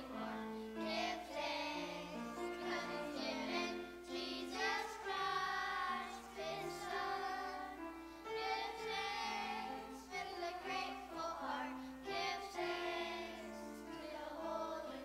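Children's choir singing a song, the voices moving from note to note without a break.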